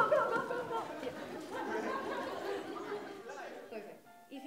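Many people talking and chattering at once, the mix of voices fading down toward the end.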